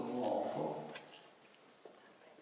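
A man speaking, holding a drawn-out syllable for about the first second, then pausing.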